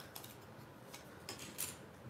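Faint crinkles and small clicks of paper and cardstock being handled, as backing is peeled off foam adhesive dimensionals and a die-cut cardstock piece is pressed into place, with a few short crackles in the second half.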